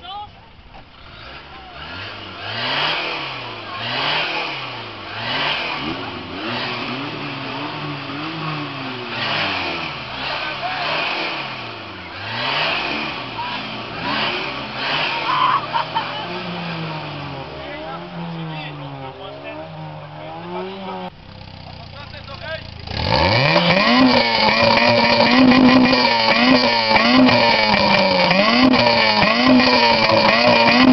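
Car engine revved over and over through a loud sport exhaust, the revs rising and falling about every second and a half, for a noise-meter reading at the tailpipe. About two-thirds of the way in it cuts out. A second car's exhaust then comes in much louder, held at high revs with a slight waver.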